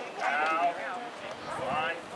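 Raised voices yelling: a long drawn-out, high-pitched shout in the first second, then a shorter call near the end.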